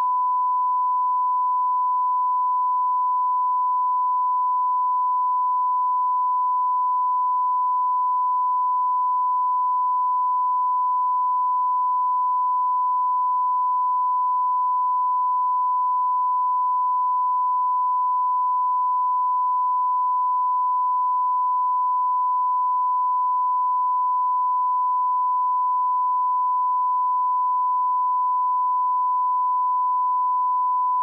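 Broadcast line-up tone sent with colour bars: a single steady 1 kHz sine tone held without a break.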